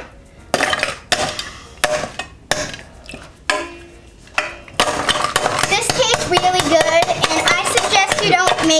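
A milky drink poured from a stainless steel cocktail shaker into a glass of ice, with a run of sharp clinks of ice and metal against glass over the first four seconds or so. From about five seconds in, a child's voice sings over it.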